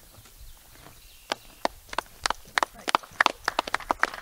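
A quick run of sharp, irregular taps, several a second, starting a little over a second in.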